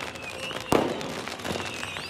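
Fireworks going off: a dense crackle of firecracker pops with short high whistles over it, and one loud sharp bang a little under a second in.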